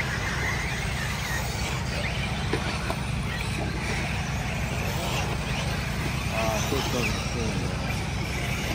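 Electric off-road RC buggies running on a dirt track, a steady mix of motor whine and tyre noise with a few short rising whines as cars accelerate.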